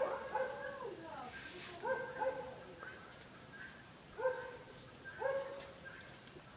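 A dog barking in short calls, about six of them, some in quick pairs.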